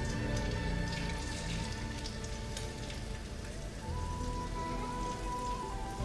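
Shelled shrimp sizzling in hot oil in a frying pan, over soft background music.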